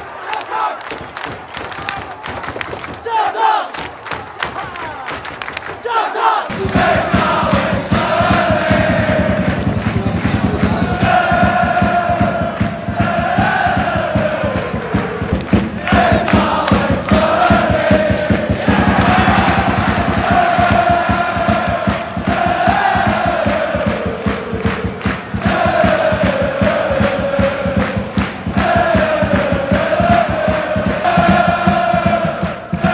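A crowd of football supporters making noise in the stand. About six seconds in, it gives way abruptly to a large crowd singing a chant together, long held notes that rise and fall and repeat.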